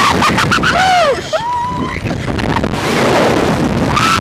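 Wind rushing over the onboard microphone as the Slingshot reverse-bungee ride's capsule is flung upward, with the riders' short, sliding cries in the first second and a half.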